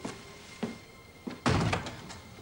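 A room door shutting with a single loud thud about one and a half seconds in, preceded by a few faint clicks.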